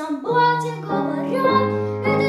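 A child singing a wartime song over piano accompaniment, moving through several held notes.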